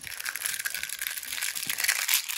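Dense, continuous crackling as small hands squeeze and break apart a brittle blue toy shell.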